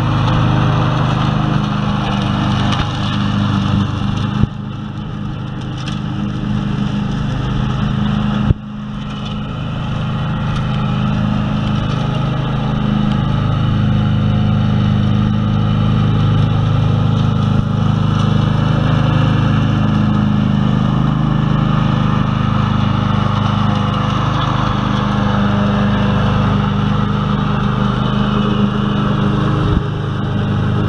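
Ride-on lawn mower engine running steadily under load as it cuts grass, with the mower deck's whir. The level drops sharply twice, about four and eight seconds in, then picks up again.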